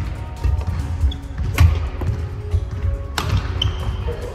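Badminton rally: two sharp racket strikes on the shuttlecock, about a second and a half apart, with shoes thudding on the wooden court floor. Background music plays throughout.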